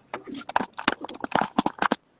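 Phone handling noise: an irregular, rapid run of knocks and clicks as the phone is moved about, cutting off suddenly at the end.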